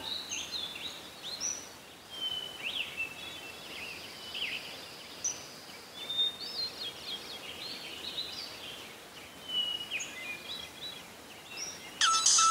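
Several birds chirping and calling: many short, high notes that sweep up and down, coming irregularly throughout over a faint steady hiss.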